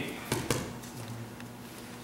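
Two short knocks on a judo mat close together, a third and half a second in, then a quiet stretch with a faint low hum.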